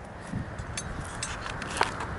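Footsteps through dry grass and stubble: a few light, scattered steps over a low rumble of background noise.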